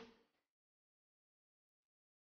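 Near silence: the soundtrack drops out almost completely, with only the tail of a spoken word fading away at the very start.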